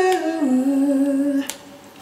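A man's unaccompanied singing voice holding the last word of a sung line, stepping down to a lower note and stopping about one and a half seconds in.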